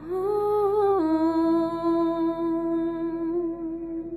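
A woman's voice holding one long sung note at the close of a slow ballad. It dips to a lower pitch about a second in, then holds steady and fades away near the end, over soft steady backing tones.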